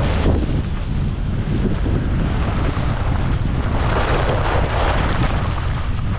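Wind rushing over the microphone of a skier's camera during a fast downhill run, with the hiss of skis carving groomed snow swelling at the start and again about four seconds in.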